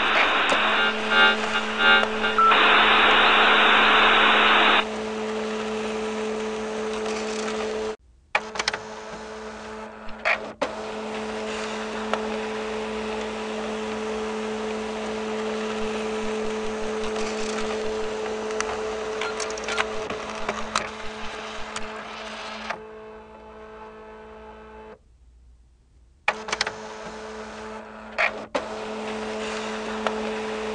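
A dial-up modem's data carrier hisses loudly for about the first five seconds, sounding like telephone-line noise, then cuts out. After it, a steady two-tone electrical hum from the computer equipment carries on, with a few short clicks and two brief dropouts.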